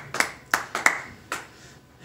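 Scattered claps from a small comedy-club audience after a punchline, about five separate claps that thin out and stop about a second and a half in.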